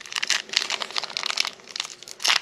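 Foil wrapper of a Pokémon TCG Fusion Strike booster pack crinkling and crackling in gloved hands as it is pulled open, a quick run of small crackles.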